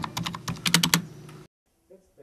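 Fast typing on a computer keyboard: a quick run of key clicks through about the first second, then stopping abruptly.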